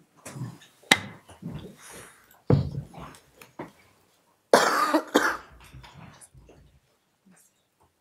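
A few coughs and throat-clearing sounds in a room, the loudest about halfway through, with a sharp click about a second in.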